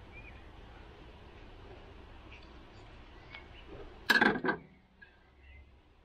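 A screwdriver is forced through a rubber grommet to punch a hole for a hose. There is low handling noise, then one short loud burst about four seconds in as the blade pushes through the rubber.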